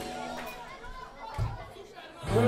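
A brief gap in a live band's music in which voices talking in the crowded room are heard. There is one low thump about one and a half seconds in.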